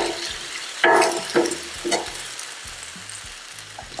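Bell peppers sizzling in oil and a little water on a Blackstone steel flat-top griddle, the water steaming them soft. A metal spatula scrapes and turns them across the griddle plate, loudest about a second in, with a couple of lighter strokes after. The sizzle slowly dies down.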